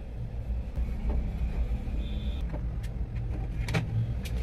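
Light clicks and taps of hard plastic parts as a plastic toy house is screwed and pressed together with a small screwdriver; a few sharp clicks near the end. A steady low rumble runs underneath.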